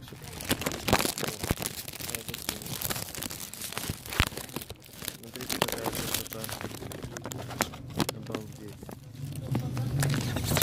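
Clear cellophane wrap on a dried-fruit gift basket crinkling as it is handled, a dense run of small crackles.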